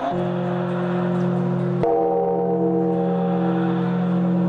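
Large temple bell struck with a swinging log, its deep tone ringing on steadily. A second strike comes a little under two seconds in and adds brighter overtones.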